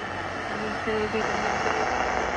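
National Panasonic RF-858D portable radio tuned to the shortwave band, playing a spoken talk broadcast through its speaker over a steady hiss of static. The hiss comes from weak shortwave reception.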